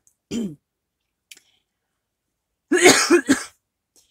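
A woman clearing her throat: one harsh, loud burst of a few quick pulses about three seconds in, after a brief, softer vocal sound near the start.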